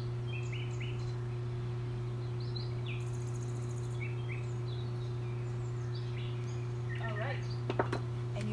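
Birds chirping on and off over a steady low hum. Near the end come a couple of sharp knocks as the dumbbells are set down.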